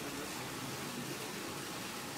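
Steady, even hiss of background noise, with no distinct event.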